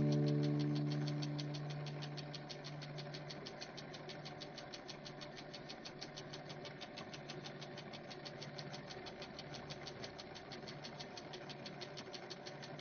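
The last low note of the background music fades out over the first two or three seconds, leaving a faint, steady, rapid and even mechanical ticking.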